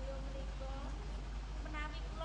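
A performer's voice in drawn-out, pitched phrases: a held note at the start and short bending phrases near the end, over a steady low hum.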